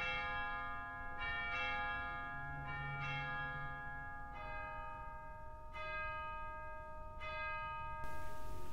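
Bells tolling slowly, a new stroke about every second and a half, each left ringing on under the next.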